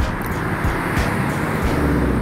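Street traffic noise with a vehicle driving close by, its engine rumble growing stronger near the end.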